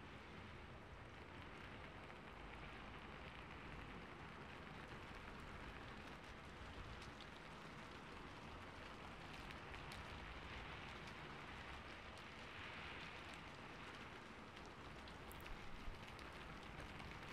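Faint, steady hiss like soft rain, with a few faint ticks.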